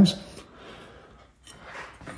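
Quiet room with faint handling sounds as a part is moved by hand, and one light click about one and a half seconds in.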